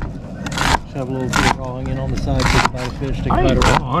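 A knife slicing through a raw onion on a plastic cutting board, a few crisp cuts about a second apart.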